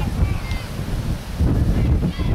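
Wind buffeting the camera's microphone: a gusty, uneven low rumble, with faint distant voices above it.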